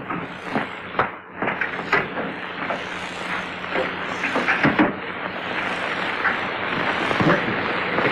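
Irregular knocks and thumps as workmen shift a grand piano, over the steady hiss and low hum of an early sound-film soundtrack.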